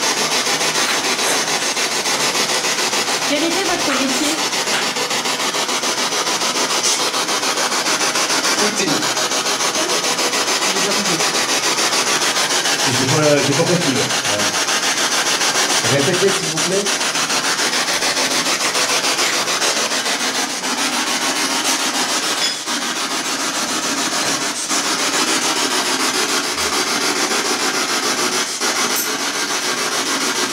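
Loud, steady static hiss from an electronic ghost-hunting machine, with a few short voice-like warbles in it, the loudest about thirteen and sixteen seconds in.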